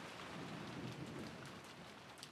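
Faint, even noisy wash at the very end of a pop track, dying away steadily as the song fades out, with a few faint ticks.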